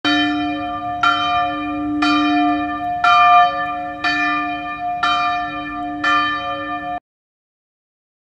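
A single church bell tolling seven times at the same pitch, about once a second, each stroke ringing on until the next; it cuts off suddenly after the seventh.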